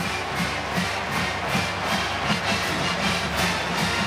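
Music playing in a stadium, with a steady beat of about two to three drum hits a second, over crowd noise.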